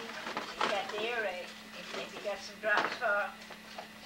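Indistinct, high-pitched voices talking in a room, in two short stretches, over a steady faint hum.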